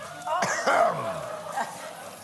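A man's voice making a short throaty, non-word sound that falls in pitch, starting about half a second in and lasting about a second.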